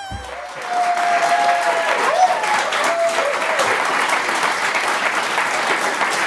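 Studio audience applauding, a dense steady clatter of many hands clapping, with a few voices calling out over it in the first few seconds. The intro music cuts off just as the applause starts.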